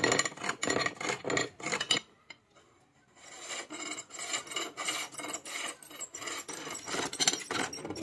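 Wooden masher handle being turned on a bow lathe: the cutting tool scrapes the spinning wood in rhythmic strokes with each pull of the bow, about three a second. The scraping stops for about a second around two seconds in, then resumes more densely as a wide flat blade is held to the work.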